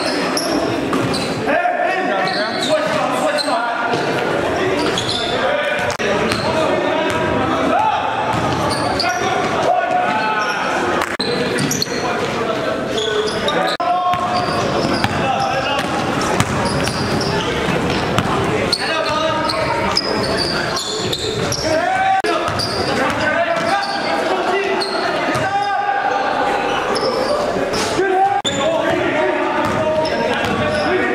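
Live basketball game sound in a gymnasium: a basketball dribbled and bouncing on the court floor, with indistinct voices of players and spectators echoing around the hall.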